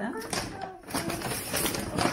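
Shopping bag rustling and crinkling as a hand rummages inside it to pull out groceries, a dense crackly noise through most of the moment.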